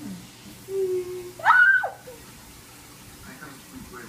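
Water stirred in a glass vase fish bowl as a gloved hand reaches in, with a short, high-pitched squeal about a second and a half in.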